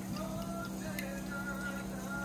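Soju trickling from a glass bottle into a small shot glass, with a light click about a second in, over steady background music.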